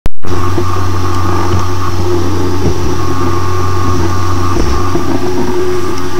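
Loud, steady low hum with hiss and a few faint steady higher tones, opening with a short pop.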